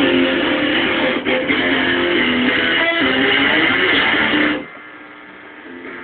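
Electric guitar strummed through an amplifier, playing chords, then stopping abruptly about four and a half seconds in, leaving only a faint ringing hum.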